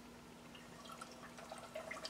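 Granulated sugar being poured from a glass measuring cup into a saucepan of water: a faint pouring trickle with small scattered ticks that become more frequent after about a second. A low steady hum lies beneath.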